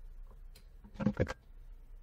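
A light switch flipped off: a quick cluster of clicks about a second in.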